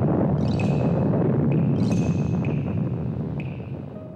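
A deep rumble of a nuclear explosion sound effect, fading out, with a high ringing ping-like sound recurring a little over once a second.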